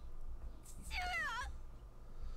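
A single short, high-pitched cry that wavers and falls in pitch, lasting about half a second near the middle, over a steady low rumble.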